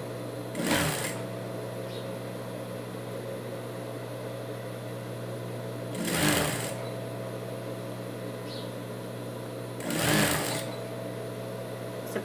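Industrial straight-stitch sewing machine with its motor humming steadily, and three short bursts of stitching about a second in, at about six seconds and near ten seconds, as a knit neckband is sewn round.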